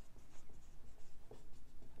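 Marker pen writing on a whiteboard: a quick run of short strokes as a word is written out.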